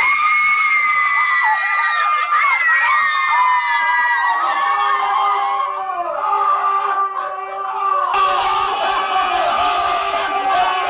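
A group of women screaming with excitement in long, high shrieks. About eight seconds in the screaming becomes noisier and more crowd-like.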